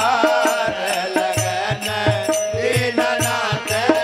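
Devotional bhajan music: a hand drum beats a steady, even rhythm under a held tone and a bending melody line.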